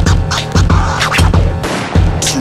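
Hip-hop backing track with DJ turntable scratching over a steady bass-heavy beat.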